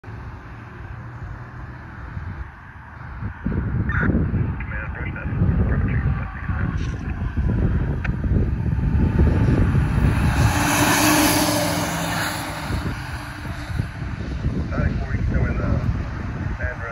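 Wind buffeting the microphone, while a fire brush truck drives past with its lights on. Its tyre and engine noise swells to a peak about two thirds of the way through, then eases off as it moves away.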